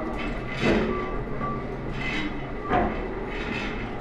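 Large engine lathe running, turning a steel crane rope drum, a steady mechanical noise with louder rasping swells that come back about every second and a half.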